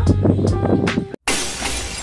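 Background music with a steady beat cuts off about a second in. After a split second of silence, a loud glass-shattering sound effect bursts in and slowly fades.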